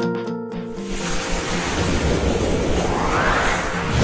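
Electric piano notes stop about a second in, giving way to a swelling whoosh sound effect that rises in pitch, with a deep low hit near the end as a title animation begins.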